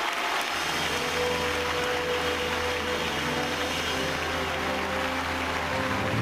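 Audience applauding a winner's announcement, with music from the show's band setting in about half a second in: held chords over a steady bass note, playing on under the clapping.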